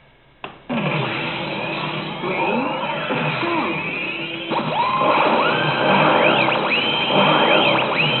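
Yamasa Pachislot Zegapain machine's sound effects and music at the start of its AT bonus: a sharp click about half a second in, then a loud burst of electronic music with many rising and falling synth sweeps.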